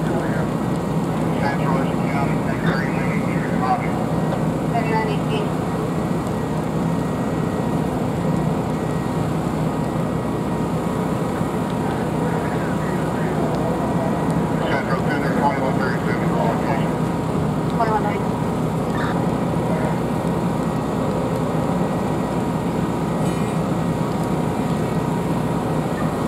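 Steady low rumble of running fire apparatus engines and pumps, with a faint steady whine above it. Indistinct distant voices come and go.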